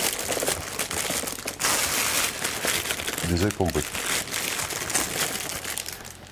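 Thin clear plastic bag crinkling and rustling continuously as a packaged figurine inside it is lifted and handled, with many small irregular crackles.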